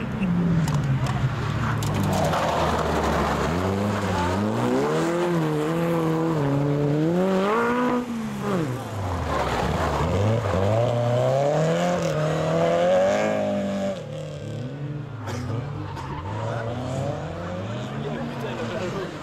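Rally car engines revving hard through a tight bend, the pitch rising and falling with throttle and gear changes. The engine drops off sharply about eight seconds in and runs quieter in the last few seconds.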